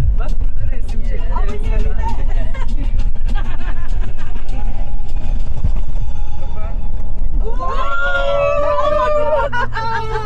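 Inside the cabin of a Toyota Land Cruiser driving over sand dunes: a steady low rumble of engine and tyres under passengers' chatter. About eight seconds in comes a loud held cry of voices.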